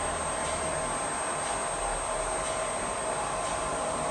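Steady whirring fan noise with a few faint steady tones, under a few faint strokes of a marker on a whiteboard.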